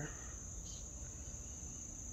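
Steady high-pitched drone of an outdoor insect chorus, over a faint low rumble.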